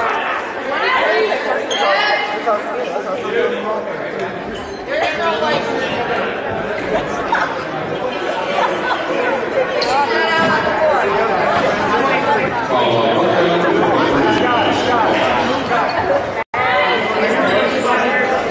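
Many people talking at once in a school gymnasium, a steady babble of spectators' and players' voices with no single voice standing out. The sound cuts out for an instant near the end.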